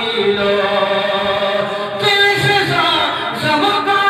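A man's solo voice singing a devotional naat into a microphone without instruments, drawing out long held notes.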